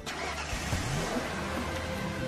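Car engine running and revving up as the car pulls away, its pitch rising briefly under a second in.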